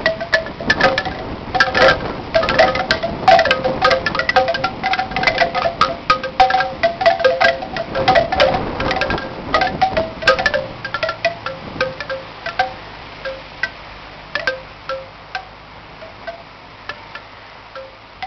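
Bamboo wind chime, its hollow cane tubes knocking together in the wind with pitched wooden clonks. The strikes come in busy, tumbling clusters for the first half, then thin out to occasional single knocks as the wind eases.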